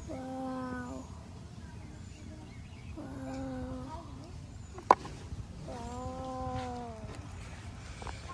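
An animal calling three times, each call drawn out for about a second at a steady pitch, with a single sharp click shortly before the third call.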